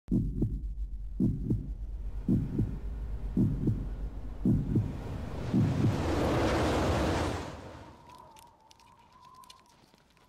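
Heartbeat sound effect: about six low double thumps, lub-dub, roughly a second apart. Then a rush of noise swells up and fades away, leaving only a faint high tone with light ticks near the end.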